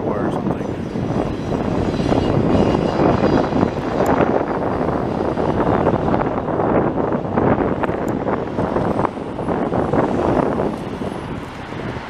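Freight train of autorack cars rolling past: a steady rumble of steel wheels on rail, with constant rapid clacking and rattling from the cars.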